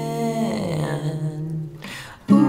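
A man singing one long held note in a soft pop song. The note steps down in pitch about half a second in and fades out near the end.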